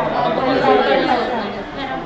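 Speech only: people talking, with several voices overlapping.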